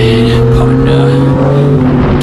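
Motorcycle engine running at nearly steady revs while riding, with wind rushing over the microphone.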